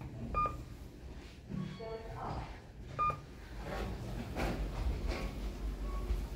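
Lift car button panel giving short electronic beeps, twice, about two and a half seconds apart, over a low hum from the lift.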